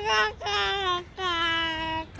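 A high voice singing three drawn-out notes, each a little lower than the last, the final note held for nearly a second.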